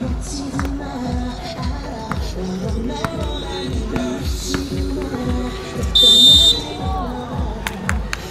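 Background music with a steady beat plays over the court. About six seconds in, a loud electronic buzzer sounds for about half a second, plausibly the horn ending the game.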